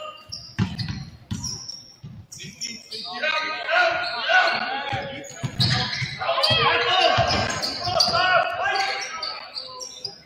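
A basketball dribbled on a hardwood gym floor, a run of short bounces, with voices calling out in the echoing gym.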